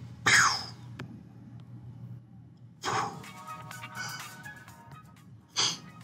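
Edited sound effects and music in a dramatized comic reading: a short, sharp noisy burst just after the start, a click a second in, then a brief music cue of held notes from about three seconds in, and another sharp burst near the end.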